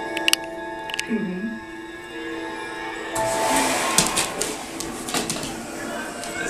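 Background music, then about three seconds in a vacuum cleaner switches on and runs with a steady rushing hiss.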